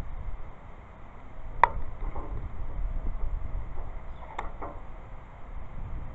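A glass beaker and rubber balloon being handled as the balloon's twisted neck is pulled off the beaker's mouth: a sharp click about a second and a half in and a fainter one a little past four seconds, over a low steady rumble.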